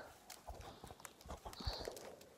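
Faint, irregular soft knocks and crunches, a few short ones scattered through the quiet.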